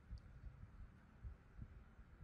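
Near silence: faint room tone with a few soft, irregular low thuds.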